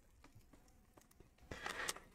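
Faint handling noise from a hard plastic graded-card slab turned in the hands: a few light clicks, then a soft scuffing rustle near the end.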